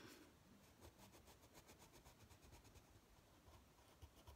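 Near silence, with the faint, rapid scratch of a Prismacolor coloured pencil pressed hard on paper as a leaf is coloured in.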